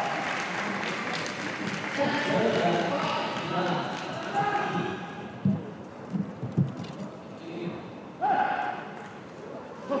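Voices shouting and calling out in celebration, with a few sharp thuds of feet on the court floor about halfway through, followed by one more short shout.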